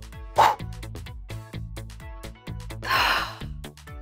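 Upbeat children's background music with a steady beat, with two short breathy gasps, one about half a second in and one about three seconds in.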